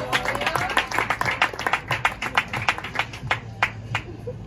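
A small group of people clapping, dense at first, then growing sparser and dying out in a few last single claps near the end.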